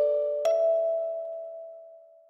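Kalimba playing the last two notes of the melody, D5 and then E5 about half a second later. Both notes ring on together and slowly fade away.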